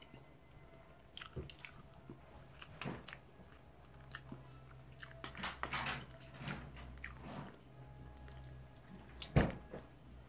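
A person eating barbecue chicken close to the microphone: chewing and biting, with scattered small clicks and scrapes of a fork on the plate, and one sharper knock near the end.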